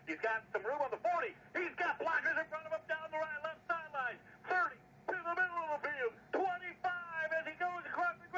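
Speech only: a radio play-by-play announcer calling the kickoff return without a break, his voice high-pitched and heard through a narrow broadcast-quality channel.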